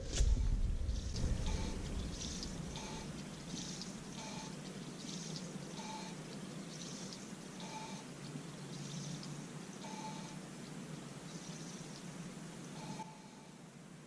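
A hand-spun rear wheel on a Honda Accord coasting down, its brake drum scraping the shoe once every revolution, a short scrape that comes further apart as the wheel slows. The owner takes this for an out-of-round drum grabbing in one spot.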